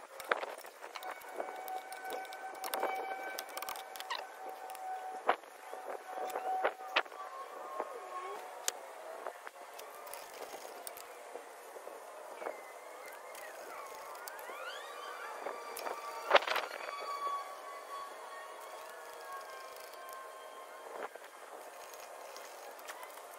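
Metal hand tools clicking and knocking as a socket wrench with an extension works the wheel bolts and caliper bolts of a car's front wheel, with a sharp knock about two-thirds of the way through. A steady high tone sounds in the background for the first several seconds, and wavering, gliding tones follow later.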